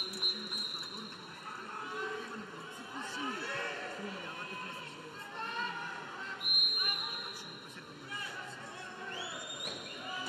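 Background voices and chatter in the pool hall, with a whistle: a short blast right at the start and a louder held blast of under a second about six and a half seconds in, the referee's long whistle that calls the swimmers up onto the starting blocks.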